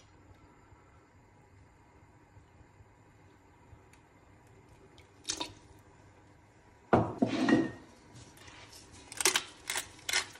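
Metal spoon clinking and scraping against a stainless steel pot as a liquid sauce is stirred. After a mostly quiet start, the loudest clatter comes suddenly about seven seconds in with a brief ring, and a few more clicks follow near the end.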